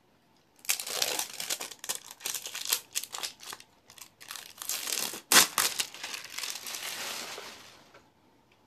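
Plastic wrapping being torn off a tube of body cream and crumpled by hand: a dense, continuous crinkling with one sharp crackle about five seconds in, fading out near the end.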